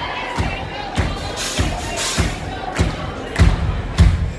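A live band's kick drum beating a steady pulse, about one thump every 0.6 seconds, over crowd noise.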